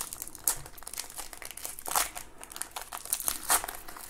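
Gold foil trading-card pack wrapper crinkling in irregular crackles as it is handled and torn open, with a few sharper crackles scattered through.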